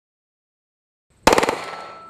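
A short burst of fully automatic gunfire from a compact submachine gun, starting about a second and a quarter in. The shots come very fast, roughly twenty a second, and echo away over the rest of the moment.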